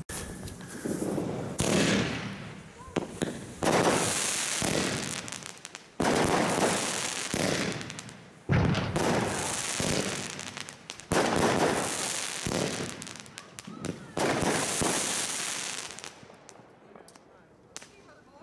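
Hong Deng Long 'True Tradition' category-2 firework pot firing a series of salvos, about six loud bursts two to three seconds apart. Each begins suddenly and trails off in crackling hiss, with smaller pops in between, and the whole dies away near the end.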